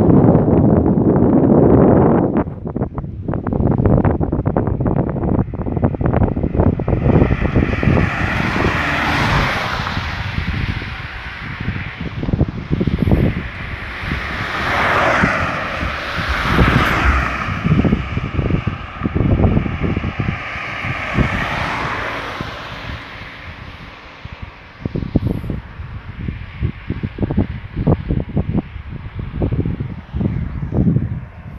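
Wind buffeting the microphone with rumbling gusts, heaviest at the start. A passing car's engine and tyres rise and fade in the middle.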